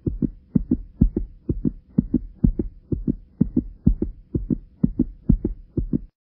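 Heartbeat sound effect: a fast, steady double thump, about two beats a second, with a faint steady hum underneath.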